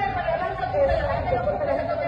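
Several people talking at once, their voices overlapping so that no words stand out.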